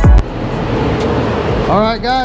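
Background music cuts off just after the start, leaving a steady rush of air in a car paint booth. A man starts speaking near the end.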